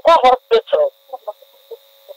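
A voice speaking for about the first second, then a few faint short pitched sounds over a steady low hum.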